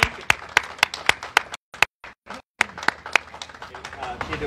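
Hand clapping from a small audience, sharp claps at a steady pace of about three or four a second. The sound cuts out completely for brief moments around the middle.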